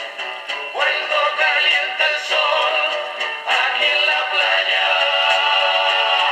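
Penny Borsetta portable record player playing a 1960s pop single through its small built-in speaker: male voices singing over the band, coming in about a second in. The sound is thin, with no bass.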